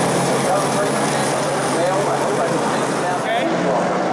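Stock car engines running at low speed around the track, with indistinct crowd chatter close by.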